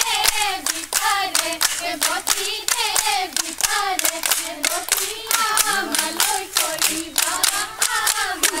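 Women singing a Bihu song together over quick, rhythmic hand-clapping, several claps a second, as accompaniment to a Jeng Bihu dance.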